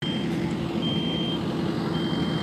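A construction vehicle's reversing alarm beeping, one high beep about every second, over the steady low rumble of a running engine.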